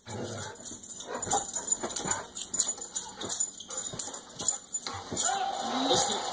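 An excited dog whining and giving short yelps, mixed with scattered short clicks and knocks, with a rising whine near the end.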